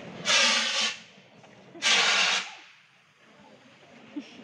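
Portable fire extinguisher discharging in two short hissing bursts, each about half a second long and about a second and a half apart. It is aimed at a gas flame at an LPG cylinder's valve, and the flame is put out.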